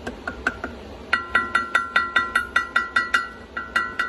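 A metal fork tapping rapidly on a stainless steel bowl, about four or five ringing taps a second, faint at first and then loud from about a second in. It is a food call that a pet rainbow lorikeet is trained to link with food, used to bring him down from a tree.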